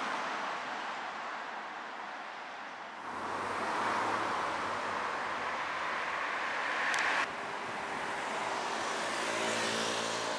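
Road traffic noise: cars passing on a nearby street, a steady rush of tyres and engines. It swells and changes abruptly twice, about three and about seven seconds in.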